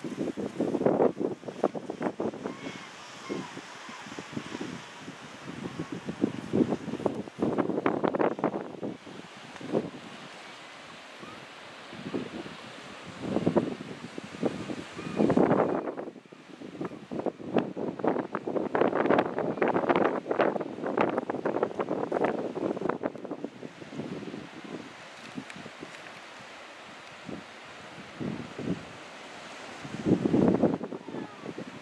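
Gusts of wind buffeting the camera microphone in irregular bursts that come and go every second or two, over a steady rush between them.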